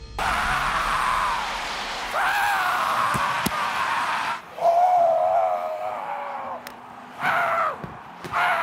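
A man screaming in four long, drawn-out yells, one after another, over crowd noise.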